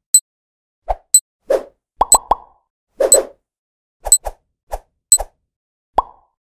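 Cartoon-style pop sound effects and sharp high ticks of an animated countdown, a tick about once a second with pops in between and three quick blips about two seconds in.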